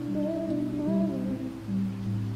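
Slow acoustic song with heavy empty-hall reverb: a high sung melody bends between notes over held low notes.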